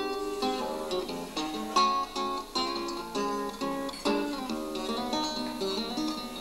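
Nylon-string classical guitar played solo, with plucked chords and single notes ringing: the instrumental introduction to a song, before the singing comes in.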